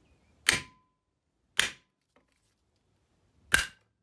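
Hammer striking a steel pin punch set on a hard drive's spindle hub, driving the spindle motor out of the aluminium casing held in a vise. Three sharp metallic taps, the last the loudest, the first two leaving a brief ring.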